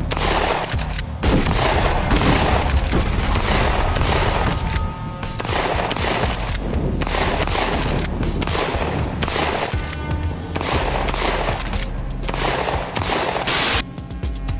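DP-12 12-gauge double-barrel bullpup pump shotgun fired repeatedly, a loud shot roughly every second, each with a ringing tail. Background music with a steady low bass runs underneath.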